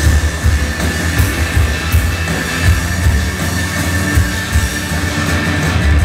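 Live indie rock band playing an instrumental passage with no singing: electric guitars, bass and drum kit, loud and full, with repeated cymbal hits over a heavy low end.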